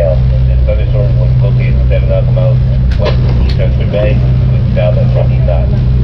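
A boat's engine droning steadily while underway, with a faint untranscribed voice over it.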